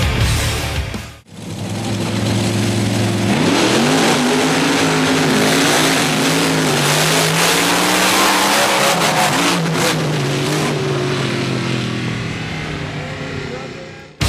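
Monster truck engine running at full throttle on a drag run. It starts about a second in, climbs in pitch, holds at high revs, then fades near the end.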